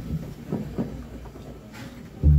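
Low, steady hum from the stage amplification, with a few soft knocks and a brief hiss near the end, while the band's instruments sit idle between numbers.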